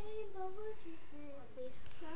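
A young girl singing unaccompanied, moving through a run of short held notes that step up and down in pitch.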